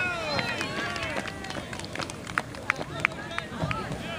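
Several distant voices of soccer players and spectators shouting and calling out across the field, overlapping, loudest at the start. A few short sharp knocks come in the second half.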